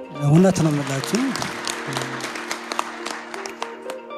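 Audience applauding in a large hall: a dense patter of many hands clapping, joining after a brief bit of a man's voice near the start, over a steady background music bed.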